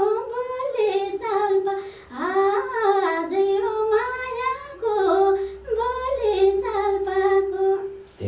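A woman singing unaccompanied in short melodic phrases with bending turns, ending on a long held note.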